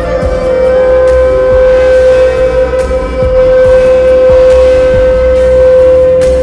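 Slowed-and-reverbed Bollywood ballad, with one long note held steady over a deep bass.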